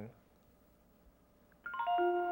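Short electronic chime from an automated phone service, heard over the telephone line: a few steady tones enter quickly one after another and sound together, about a second and a half in, after a stretch of quiet.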